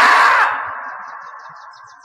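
A loud, drawn-out cry or scream sound effect that breaks off about half a second in and trails away in a long echo.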